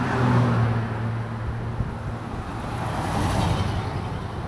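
A car passing close by on a street: a low engine hum and tyre noise, loudest in the first second and then fading. About three seconds in, a brief swell of hiss comes up.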